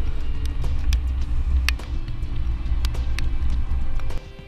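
Steady low rumble of a car driving through a slalom, picked up by a camera mounted at the rear hitch bike rack, with occasional sharp clicks and rattles from the loaded platform rack.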